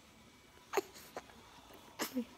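A baby's single short hiccup about a second in, followed by a fainter click; otherwise quiet.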